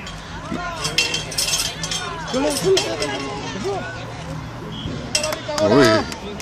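Scattered shouts and calls of spectators and young players across a youth football pitch, heard at a distance, with a few light clinks about a second in and a louder nearby voice near the end.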